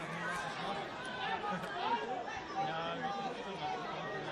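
Several people talking at once in indistinct, overlapping chatter.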